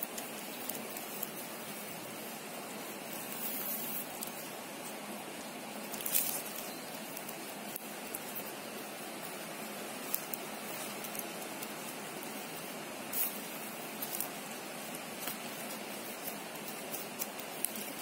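Plastic craft wire strands being handled and pulled through a woven lattice, giving a few soft clicks and rustles over a steady background hiss. The clearest come about six and thirteen seconds in.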